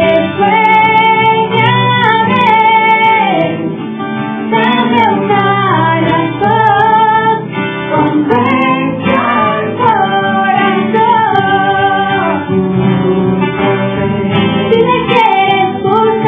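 Live acoustic pop ballad: a female voice sings the melody over strummed acoustic guitars, in a thin recording with the top end cut off.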